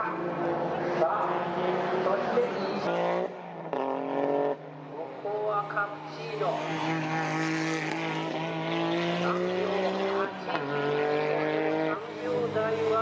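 Suzuki Cappuccino race car engine at full throttle on track. The note drops about three seconds in as the car slows, then climbs steadily in pitch as it accelerates, with a short break and drop near the end at a gear change.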